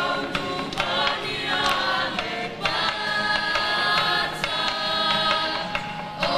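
A group of voices singing a Samoan song together in harmony, like a choir, with a few short sharp percussive strikes scattered through.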